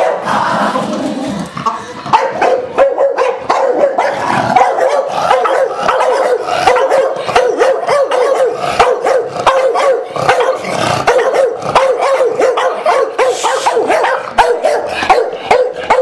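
Staffordshire bull terriers barking excitedly in a quick, almost unbroken run of barks, two or three a second. Happy barking, with tails wagging, set off by a "Who's that?".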